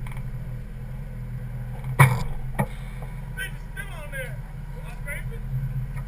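Drift car engine idling steadily, with one sharp knock about two seconds in.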